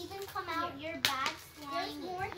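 Children's voices talking and murmuring, with one sharp click about a second in.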